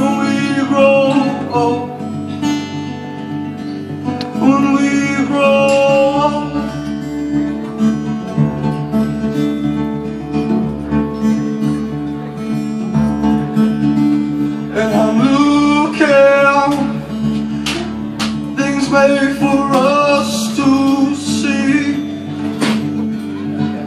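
Live male vocal with acoustic guitar: a man sings in phrases over steadily strummed guitar chords.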